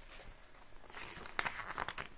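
Paper rustling as the pages of a children's picture book are flipped and handled, with a cluster of quick crinkly rustles in the second half.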